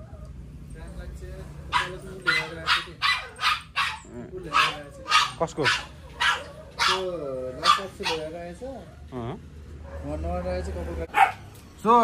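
Dog barking in quick runs of short barks, mixed with a few longer wavering calls.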